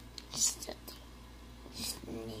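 A person whispering in two short breathy bursts, one about half a second in and one near the end, with a few light clicks between.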